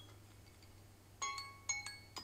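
Smartphone alarm going off about a second in, playing the first two ringing notes of its melody.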